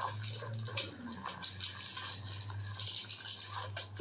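Tarot cards being handled and drawn from a small deck box: soft scattered rustles and light clicks over a steady low hum.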